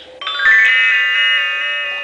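Electronic chime from a talking Christmas countdown toy's speaker: a quick run of rising notes about a quarter second in that ring on together and slowly fade.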